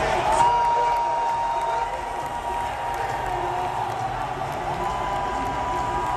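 Large arena crowd cheering and applauding, with a long steady high tone held over the noise. The noise is a little louder for the first couple of seconds, then settles.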